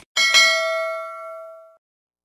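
A notification-bell 'ding' sound effect from an animated subscribe button: a short click, then a bell tone struck twice in quick succession, ringing down over about a second and a half.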